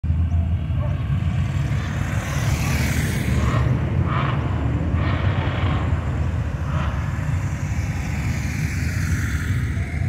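Police motorcycles riding past one after another, the nearest going by about two to three seconds in, over a steady low rumble.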